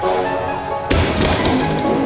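A heavily loaded barbell with bumper plates set down from a deadlift lockout onto the gym floor: one heavy thud about a second in, then a few lighter knocks. Background music plays throughout.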